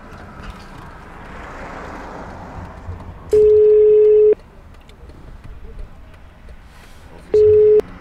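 Telephone ringback tone heard through a mobile phone as a call is placed: one steady tone about a second long, then after a pause of about three seconds a second, shorter tone that cuts off early.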